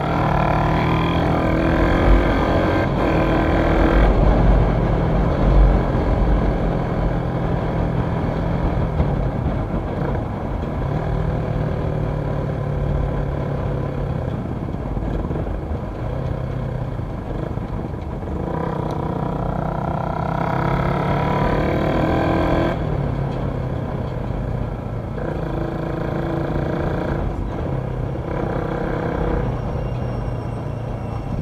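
Motorcycle engine running under way, with wind rumble on the microphone. The engine note rises and falls with the throttle and pulls harder near the start and again around twenty seconds in.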